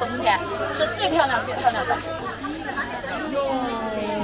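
Speech: a woman talking, with other voices chattering around her.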